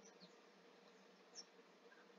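Near silence: a faint steady electrical hum from the recording's noise floor, with one tiny click about one and a half seconds in.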